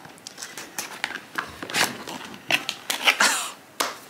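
Unboxing a cardboard product box: small clicks and scrapes as a blade slits the tape, then rustling and louder scraping about three seconds in as the box is opened.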